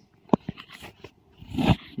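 Handling noise as a circuit board is swapped under a magnifier: a sharp click about a third of a second in and a few lighter clicks. Near the end comes a short vocal sound.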